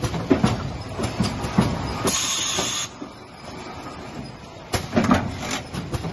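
Automatic inline oil-filling machine running: plastic jerrycans knock and clatter along the slat conveyor and against its stops. A short hiss about two seconds in is followed by a quieter spell, and the clatter starts again near the end.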